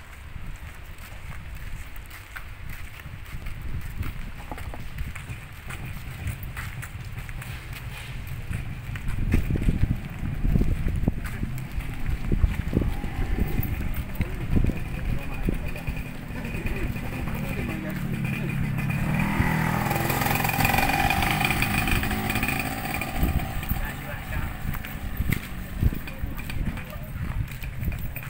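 Motorcycle engines running and moving off in a crowded parking lot, with people talking indistinctly around them. The sound builds and is loudest about two-thirds of the way through.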